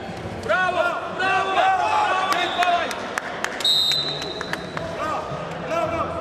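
Wrestling-hall noise: men calling and shouting from the mat side in short bursts throughout, with a short, steady high tone a little after three and a half seconds in.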